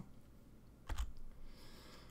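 A single sharp click with a low thump about a second in, like a key press or a tap on a desk, over faint room hiss.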